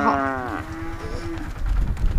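A cow mooing once, the call falling in pitch and trailing off into a thinner held tone by about a second and a half in. A low rumble follows near the end.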